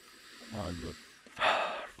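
A man's soft "oh", then, about a second and a half in, one loud, deep breath drawn in for about half a second.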